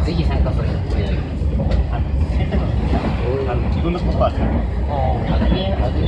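A two-car SAT721 series electric train running at speed, heard from inside: a steady low rumble with a few light clicks. People are talking in the background.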